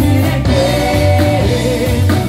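Live pop-rock band playing a song, with voices singing a long held note over electric bass, drums, guitars and keyboard.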